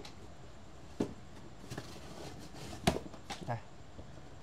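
A few short plastic clicks and knocks as a flat-pin plug is handled and pushed into a universal plug adapter, the sharpest one about three seconds in.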